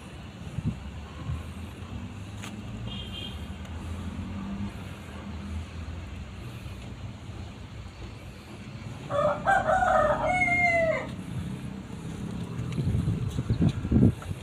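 A rooster crows once about nine seconds in, a call of about two seconds that falls in pitch at its end, over a low steady rumble, with a loud low bump near the end.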